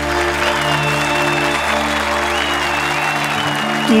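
Studio audience applauding over a playing song's instrumental intro; a singing voice comes in at the very end.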